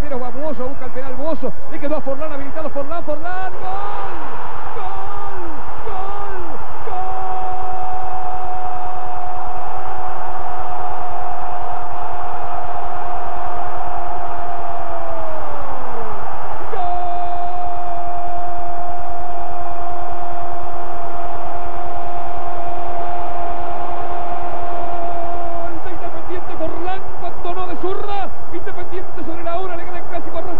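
Spanish-language television commentator's drawn-out goal cry ('¡gooool!') after a few seconds of fast excited calling. One held note of about nine seconds sags in pitch at its end, and a second held note of about nine seconds follows.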